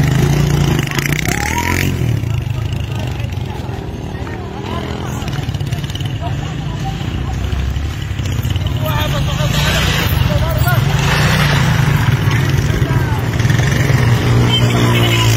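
Small motorcycle engines running close by, a steady low drone, with people's voices over it.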